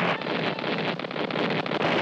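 Naval gunfire from cruisers in a continuous barrage, heard on an old film soundtrack as a dense crackling rumble with no single shot standing out.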